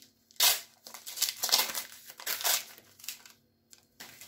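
Match Attax trading-card pack wrapper being torn open: a sharp rip about half a second in, then the wrapper crinkling as it is pulled apart and the cards are drawn out.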